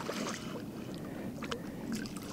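Small waves lapping, with a hooked European sea bass splashing at the surface as it is played on a spinning rod. A few faint short clicks are heard.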